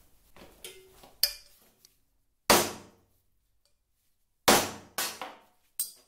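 A handful of sharp metal knocks on a steel rectangular tube lying on a workbench, each ringing briefly; the two loudest come about halfway through and two seconds later, with smaller taps around them.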